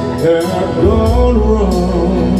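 A man singing into a microphone over backing music, amplified through PA speakers.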